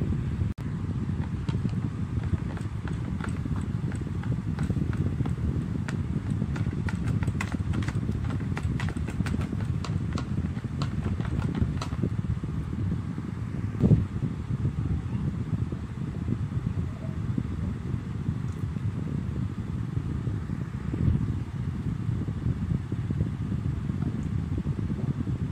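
Wire whisk beating cream in a plastic tub, the wires clicking rapidly against the sides, over a steady low rumble. One louder knock comes about halfway through.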